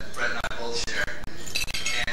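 Glassware clinking while a man talks.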